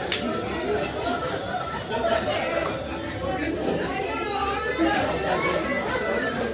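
Many people talking at once in a crowded room: a steady hubbub of overlapping conversation.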